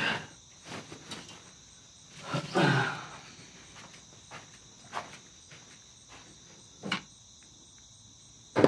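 Scattered rustles and light knocks of a man moving about a small room and handling his clothes. The loudest rustle comes about two and a half seconds in, and there are single clicks near five and seven seconds, over a steady high-pitched background drone.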